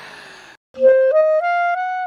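Clarinet played solo. After a brief soft hiss, a note starts just under a second in, then steps upward through a short rising phrase of about four notes.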